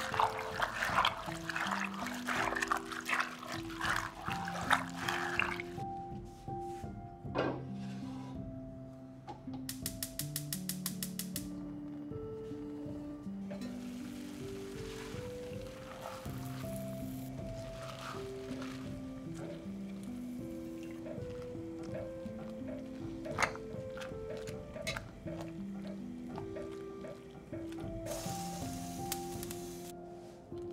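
Gentle background music of held notes. For the first six seconds, hands swishing and rinsing spinach in a glass bowl of cold water make loud splashing over it. Later come a short run of rapid, even clicks about ten seconds in, and a few soft knocks and splashes.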